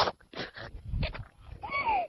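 A woman laughing in short breathy bursts, ending in a brief squeal near the end.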